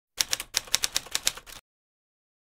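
Typing sound effect: a fast run of crisp keystroke clicks, about eight a second, that stops about a second and a half in. It goes with text being typed onto a title card.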